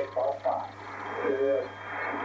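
A man's voice coming over an amateur radio receiver, thin and narrow-band, with a steady low hum underneath. A faint high whistle comes in about halfway through.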